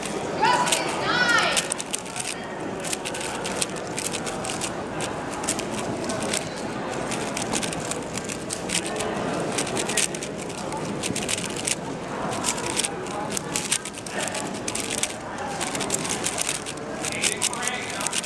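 Quick, irregular plastic clicking and clacking of an Angstrom MGC 4x4 speedcube being turned fast by hand during a timed solve, over the chatter of a large hall.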